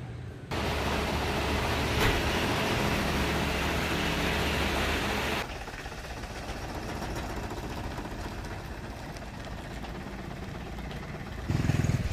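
Isuzu light truck's diesel engine running. It gets suddenly louder about half a second in, with a sharp tick a second and a half later, then drops to a quieter, steady engine and road noise for the second half.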